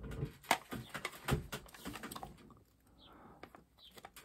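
Plastic cassette tape cases clicking and knocking against each other as they are sorted through and one is picked up: a scattered run of small clicks in the first half.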